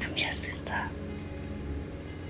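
A woman's brief whisper, breathy and hissy, in the first second, over soft, steady background music.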